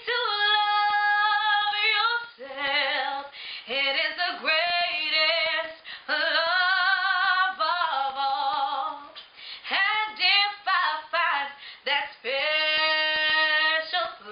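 A woman singing solo and unaccompanied: long held notes with vibrato, higher at the start and lower later, in phrases broken by short pauses for breath.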